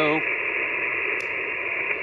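Steady static hiss from an HF amateur radio receiver's speaker, confined to a narrow voice-width band, with a weak station barely above the noise.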